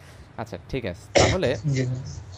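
A person's voice in short broken bits, with a loud, harsh vocal burst about a second in.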